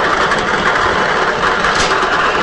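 Lottery draw machine running steadily, its numbered balls churning and rattling inside the clear drum.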